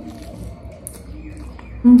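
Biting into and chewing a half-fried egg: soft wet mouth sounds, with one short smack about a second in.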